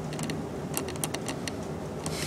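Small three-phase motor, driven by an H-bridge, spinning a plastic fan blade back up to speed with a steady low hum. A run of irregular sharp clicks sounds over the first second and a half.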